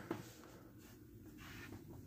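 Faint rustling and scuffing of a cardboard-and-plastic action-figure box being turned in the hand and stood on a tabletop.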